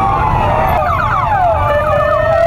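Several emergency sirens of a motorcade escort sounding at once, their pitches gliding up and down and crossing one another; about a second in, one switches to quick repeated sweeps. A low rumble runs underneath.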